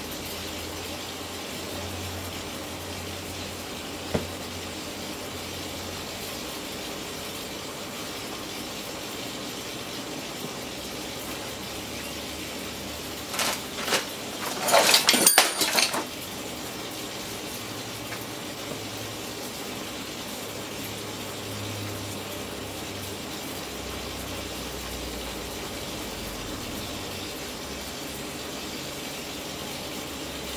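Stacked microwave-oven transformers humming steadily as they drive about 2 kV into an LG plasma display panel. There is a sharp click about four seconds in, and from about the middle the arc inside the panel crackles loudly in a few broken bursts for two or three seconds.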